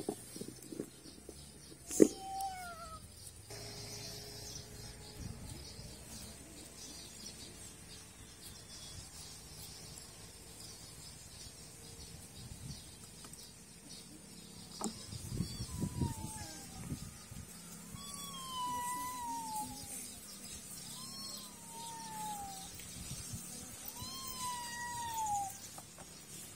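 An animal's calls: a series of separate falling tones, each under a second long, one early and five or six more in the second half, over quiet background noise.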